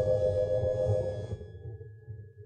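Closing held chord of a 1950s dance orchestra on a shellac 78 rpm disc: a soft sustained chord that fades out about a second and a half in, over the record's surface hiss and low rumble.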